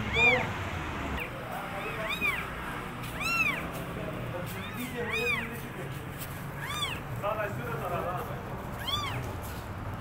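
Newborn kittens mewing: about six high, thin mews, each rising and then falling in pitch, a second or two apart.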